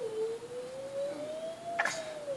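A single long, thin tone that slides slowly upward and then back down, with a short click near the end.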